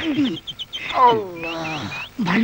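A man's drawn-out wordless cry that slides steadily down in pitch, after a few short vocal sounds. Birds chirp repeatedly in quick succession in the background.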